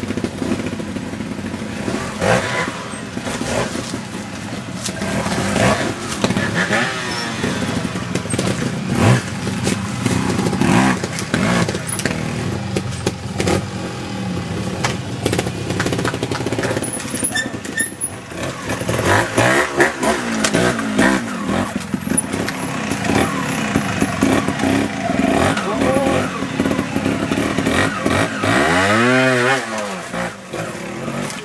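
Trials motorcycle engine revving up and down in repeated bursts as the bike climbs over rocks, with one strong rise and fall of revs near the end. People's voices are heard alongside.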